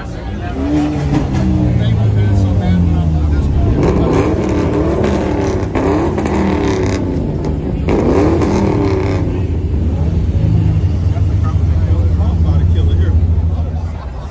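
A car engine running loudly, revved up twice, about four and about eight seconds in.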